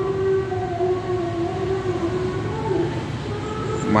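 A steady machine drone: a low rumble under a hum whose pitch wavers slightly, with a fainter higher tone coming in partway through.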